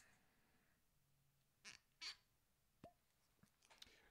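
Near silence: room tone, with a few faint short handling sounds from a glass bottle being turned in the hands around the middle, including a brief squeak.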